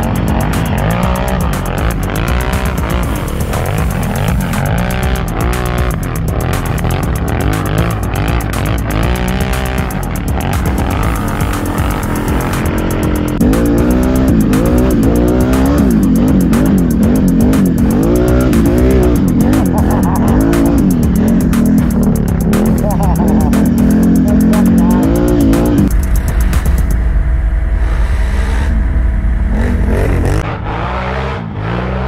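ATV engines running hard, their pitch rising and falling quickly as the throttle is worked. The sound grows louder about halfway in and settles into a steadier low drone near the end.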